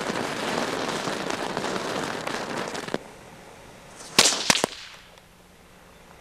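A ground firework going off with a dense, crackling spray for about three seconds, cutting off suddenly, then three sharp firecracker bangs in quick succession about four seconds in.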